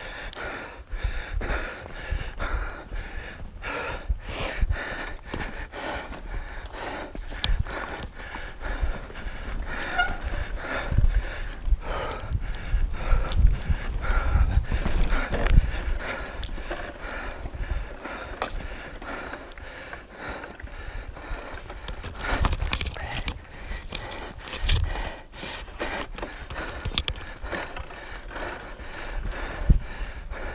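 Mountain bike ridden fast over a bumpy dirt forest trail: the bike rattles and knocks irregularly over roots and ruts, tyres run on the dirt, and wind rumbles on the camera microphone.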